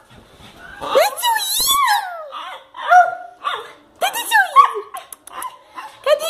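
Small dog vocalising: a series of high, whining calls that slide up and down in pitch. The longest comes about a second in, followed by shorter calls and another rising-falling one near four seconds.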